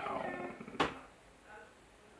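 A man's faint trailing vocal sound in a pause of his talk, then a single sharp click a little under a second in.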